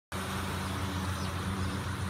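Refrigeration condensing unit with its condenser fans running: a steady low hum.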